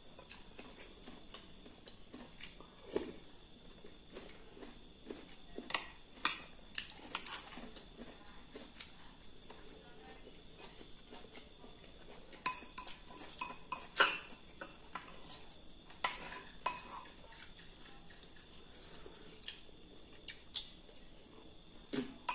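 A metal spoon scraping and clinking against a ceramic bowl while eating noodle soup, with scattered light clicks and two sharper clinks about twelve and fourteen seconds in. A steady high-pitched insect drone runs underneath.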